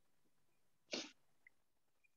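Near silence of an open online-class audio line, broken about a second in by a single short puff of noise.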